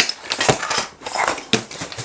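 Plastic Venetian blind slats clattering and rattling against each other as the bundled blind is pulled out of its box and handled, a quick run of irregular clicks and rustles.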